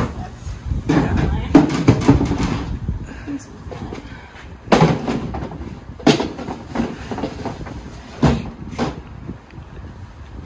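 Plastic feed bin and its lid being handled, with a large plastic container knocking against it: a run of clattering knocks early on, then single sharp knocks about five, six and eight seconds in.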